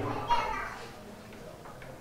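A pause in a man's speech: his last word trails off at the start, and faint, high-pitched voices are heard in the background about half a second in before the sound settles to low room noise.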